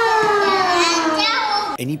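Young children calling out a long, drawn-out goodbye together, high-pitched and sliding down in pitch, cut off suddenly near the end by a man's voice.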